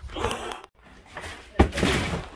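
A brief rustle, then a sharp thud about one and a half seconds in, followed by more rustling: empty cardboard boxes being handled and dropped.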